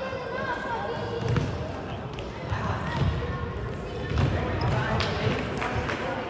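Futsal ball thudding on a wooden sports-hall floor and being kicked several times during play, amid players' and coaches' shouting voices.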